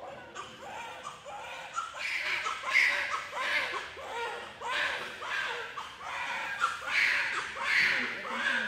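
Newborn baby crying just after delivery, in short repeated wails about two a second, getting louder about two seconds in.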